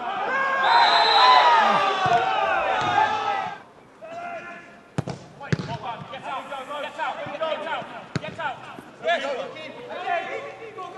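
Several voices shouting at once as a player is brought down in a tackle. Later come three sharp thuds of a football being struck, with players calling out between them.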